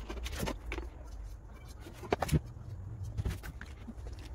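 Light handling noises: paper templates rustling and being shifted on a steel diamond saw blade and a marker pen handled on a board, a few soft clicks and rustles, the loudest cluster a little over two seconds in, over a low steady rumble.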